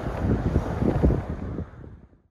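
Wind buffeting the microphone, an uneven low rush that fades out near the end.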